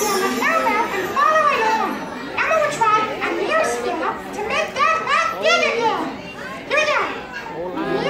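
An audience of young children calling out together, many high voices overlapping in a noisy jumble, answering a stage performer's call to do the magic.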